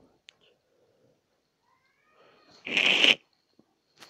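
A single short, loud burst of noise close to the microphone, lasting about half a second, about three seconds in; the rest is nearly quiet.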